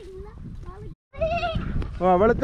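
A goat bleating: one wavering, quavering call in the second half, just after the sound drops out briefly near the middle.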